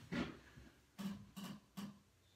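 Four short knocks and clunks at the foot end of a chiropractic table as the patient's feet and legs are handled for a leg-length check. Three of them come close together in the second half.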